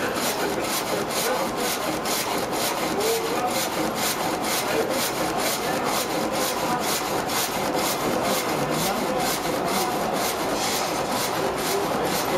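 Vertical frame saw in a mill, its reciprocating blade cutting lengthwise through a log. It makes a steady rhythmic rasp of about three strokes a second.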